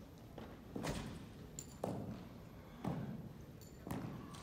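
Sharp thumps and knocks about once a second from an armed color guard's drill movements: boots striking the floor and rifles being handled. A faint metallic ring comes between the knocks.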